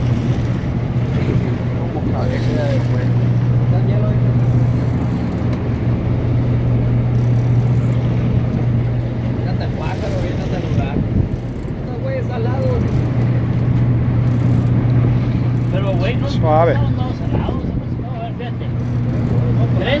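A boat's engine running with a steady low drone, easing off briefly around the middle, with scattered voices over it.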